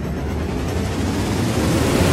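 Rumbling swell of noise in an intro jingle, heaviest in the low end and growing steadily louder.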